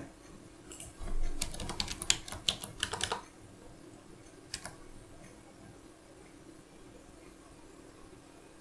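Computer keyboard typing: a quick run of keystrokes from about a second in to three seconds, one more click a little later, then only a faint steady hum.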